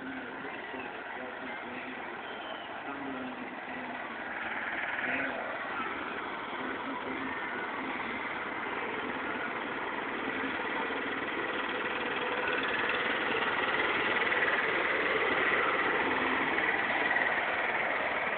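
Small engine of a barrel-train ride's locomotive running steadily, growing louder in the second half as the train draws near and passes close.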